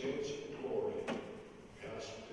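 A man speaking, with one sharp knock about halfway through.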